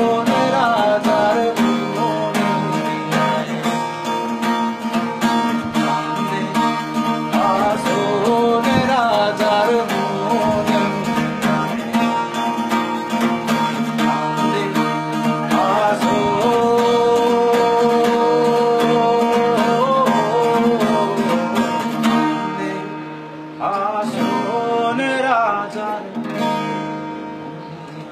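A cutaway acoustic guitar strummed steadily, with a man singing over it. Late on, the strumming thins and the sound dips, picks up briefly with a few more sung notes, then fades down.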